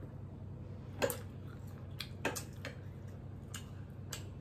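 Metal cutlery clicking against ceramic plates as food is cut and picked up: a few sharp, separate clicks, the loudest about a second in, with soft eating sounds over a steady low hum.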